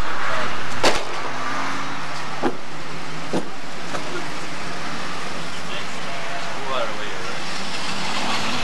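Faint, indistinct voices over a steady low hum and hiss. There is a sharp knock about a second in, followed by two fainter knocks.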